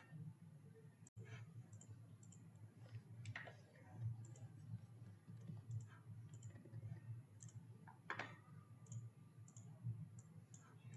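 Faint, scattered computer mouse clicks over a low steady hum.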